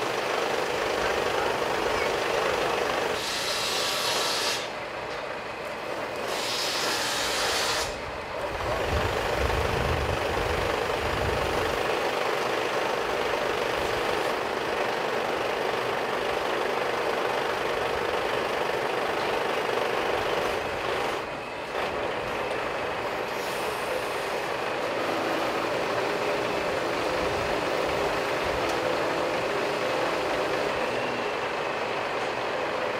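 Truck-mounted hydraulic loader crane at work lifting a load: a steady drone of the truck's engine and the crane's hydraulics, briefly dropping in level about five and twenty-one seconds in, with a deeper rumble around ten seconds in.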